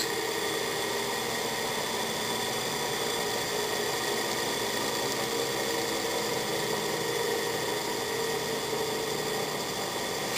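Antique ESCO synchronous electric motor running steadily at constant speed, a hum with several steady high tones over rough noise from its old, worn bearings, which need replacing.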